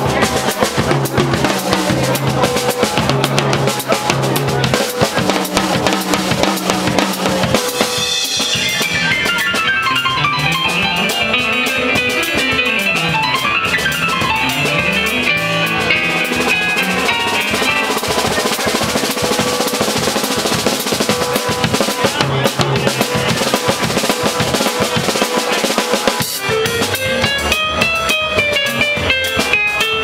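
Live Latin jazz combo playing: electronic keyboard over a drum kit and bass line. From about 8 to 18 seconds the keyboard plays fast runs that sweep up and down.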